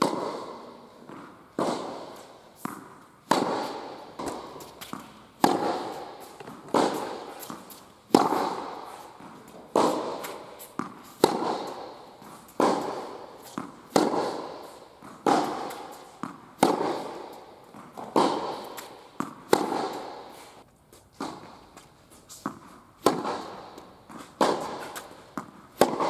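Tennis rally: a ball struck hard by rackets about every second and a half, each hit echoing through the indoor hall, with lighter taps of the ball bouncing on the court between the hits.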